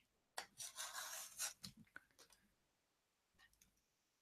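Faint scraping and rustling of a cardboard parcel being handled in the first couple of seconds, followed by near silence.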